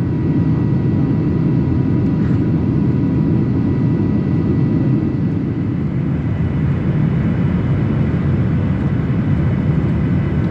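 Jet airliner cabin noise heard from a window seat beside the wing: a loud, steady low rumble of the engines and airflow, with faint steady whining tones above it.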